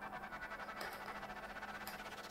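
A coiled USB cable being drawn out of a small cardboard accessory box, with a faint, fast, even rasp of the cable and cardboard rubbing.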